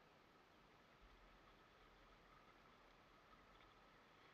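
Near silence: only a faint steady background hiss.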